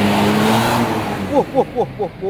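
Large intercity bus pulling away close by: its diesel engine runs with a steady low drone under a wash of engine and tyre noise, loudest in the first second and then fading as it moves off. In the second half a person gives a few short, rising shouts.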